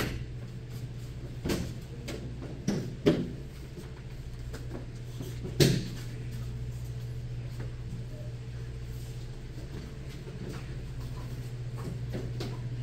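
A few scattered short thuds and knocks over a steady low hum, the loudest thud a little past halfway.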